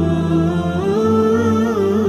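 Wordless hummed vocal music: a voice holding long notes and sliding slowly between pitches over a low steady drone.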